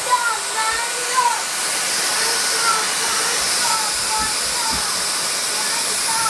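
Dyson DC35 cordless stick vacuum running steadily at full suction: an even, high hiss of rushing air from its motor and cyclone.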